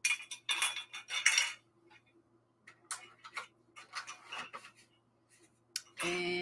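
Dishes being handled on a tabletop: a short run of clinking and clattering in the first second and a half, then scattered light clinks and knocks.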